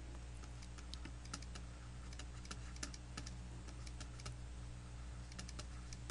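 Faint, irregular clicks and taps of a stylus on a drawing tablet as a label is handwritten, over a low steady electrical hum.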